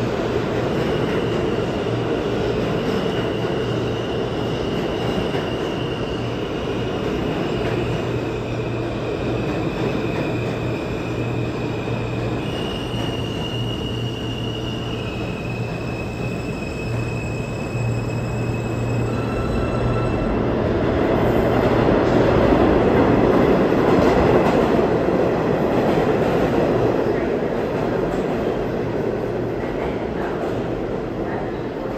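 New York City subway trains moving in an underground station: a steady rumble of wheels on rail, with thin high tones that step up and down in pitch for the first twenty seconds or so. The rumble grows louder about twenty seconds in, then eases off.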